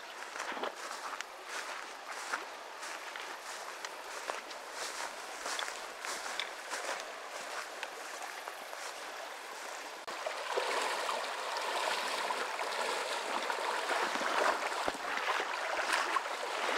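Shallow creek running over a riffle, with footsteps through long grass. About ten seconds in, the rush of water grows louder and fuller.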